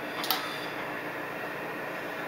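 Steady whooshing fan noise from the running linear amplifier's cooling blower, with a brief tick about a quarter second in.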